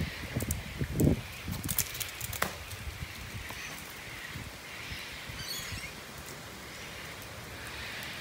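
Steady rain falling on a garden and wet brick patio, an even hiss. Low thumps of handling or footsteps come in the first two seconds, the loudest about a second in, along with a few sharp clicks.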